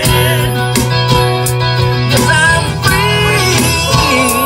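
Maton acoustic guitar strummed in a steady rhythm under a sustained low note, with a man's singing voice over it: a solo live song performance.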